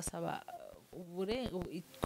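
A woman's voice, quiet and brief, in a short lull between louder phrases of conversation.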